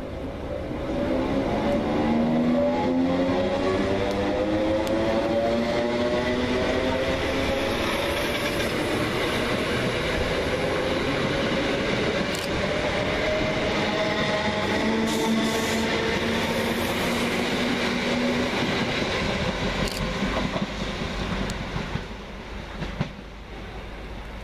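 Class 321 electric multiple unit pulling away and accelerating past: its traction motors whine, rising in pitch over the first several seconds, over a steady rumble of wheels on rail. The noise fades as the train leaves near the end, with a single sharp click just before the end.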